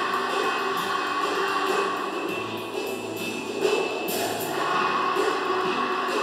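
Music: a song from a choir and band, with bass, guitar and keyboard and a steady percussion beat.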